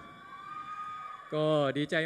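A short pause holding only faint, steady high tones, then a man starts speaking into a microphone about a second in.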